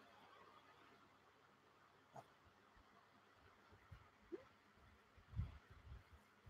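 Near silence with faint handling of plastic model-kit sprues: a click about two seconds in, a short rising squeak, and soft low knocks near the end.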